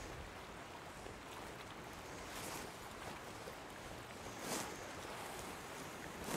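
Faint, steady wash of small waves around a wading angler's waders, with two brief louder swishes of water, about two and a half and four and a half seconds in.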